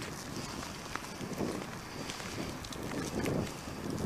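Wind gusting over the microphone in a snowstorm: a low rumbling buffeting that swells and fades irregularly every second or so, with a few faint ticks.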